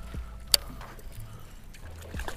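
Water lapping at a small fishing boat's hull with low wind rumble on the microphone, and one sharp click about half a second in.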